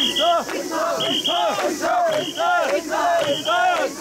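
Crowd of mikoshi bearers chanting in unison as they carry the portable shrine, rhythmic shouts about twice a second. A shrill whistle cuts in with short double blasts about once a second, keeping the bearers' rhythm.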